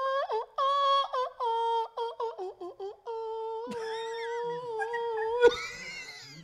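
A voice humming a wordless high melody, in short phrases at first and then in long held notes. A fainter second voice sounds along with it from a little past halfway, and there is a sharp tap near the end.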